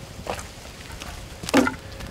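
A knock of a hard object set down on the wooden coop frame about one and a half seconds in, after a faint click.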